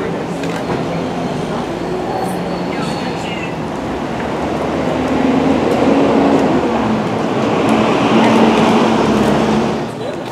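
Steady rumble of street traffic with a low engine hum, growing louder from about halfway through and falling away sharply just before the end, over background voices.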